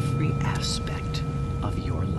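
Soft whispering voice over a steady low hum, with faint steady high tones held underneath.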